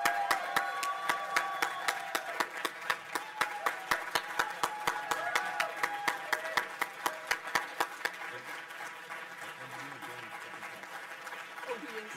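Audience applauding, with one person clapping hard and steadily close to the microphone, about three claps a second. The applause thins out after about eight seconds.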